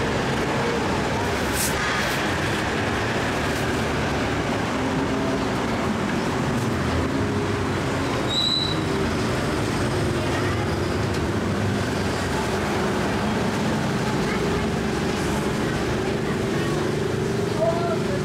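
Steady roadside street traffic, motorbikes and cars passing, with voices in the background. A brief high-pitched tone sounds about eight and a half seconds in.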